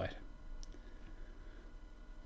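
A few faint clicks from a computer mouse as a web page is scrolled.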